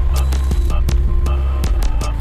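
Electronic music: a deep, sustained bass drone with sharp clicking percussion over it and a few held higher tones.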